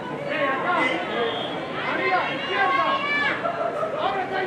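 Several voices calling out over one another, as players and the sideline call during a flag football play.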